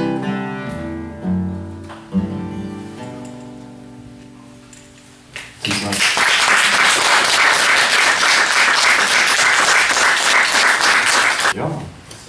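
Acoustic guitar playing the closing notes of a song, the last chord ringing out and fading away. Then a small audience claps for about six seconds, stopping just before the end.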